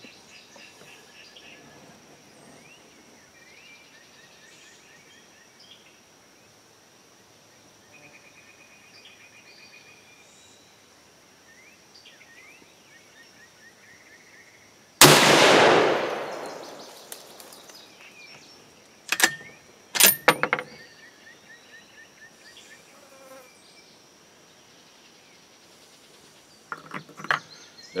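A single shot from a Savage Hog Hunter bolt-action rifle in .308 Winchester, firing a handloaded round, comes about halfway through. Its loud report dies away over a second or so. Before it there is only a steady high-pitched whine and scattered chirps in the background, and two sharp clicks follow a few seconds after the shot.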